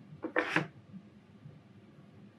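A short voiced sound from a woman, a single brief syllable about half a second in, then quiet room tone.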